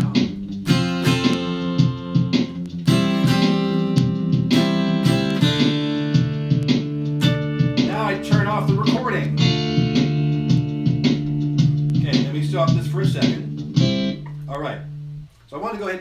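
Double-neck mountain dulcimer played through a looper pedal: a looped bass line and layered plucked chords ring over a steady drum-machine beat. Near the end the music thins to a single held low note and stops as a man starts speaking.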